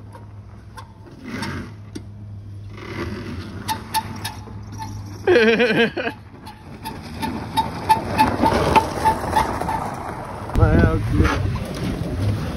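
Beat-up Kia Rio sedan driving over dirt and gravel. Its engine is a low steady hum at first, with a run of light regular ticks in the middle, and grows louder and rougher near the end as the car climbs a dirt trail.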